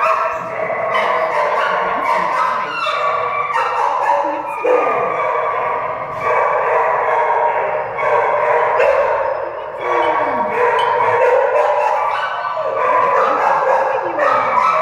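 Dogs in shelter kennels barking, yelping and howling without pause, several voices overlapping, some calls sliding down in pitch.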